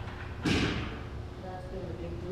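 A single sharp thump about half a second in, over faint voices in a large room with a steady low hum.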